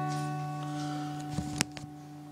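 An acoustic guitar's last chord ringing out and slowly fading, with a few small clicks and one sharp knock about one and a half seconds in.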